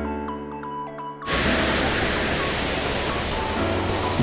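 A short musical jingle of stepped notes for about a second, then the steady rush of Manai Falls pouring into Takachiho Gorge starts suddenly and holds, with light music under it.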